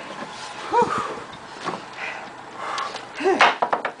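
Short wordless grunts and breathy vocal sounds from men, with a quick run of sharp knocks about three and a half seconds in.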